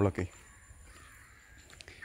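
A man's voice breaking off at the start, then a quiet pause with a few faint clicks.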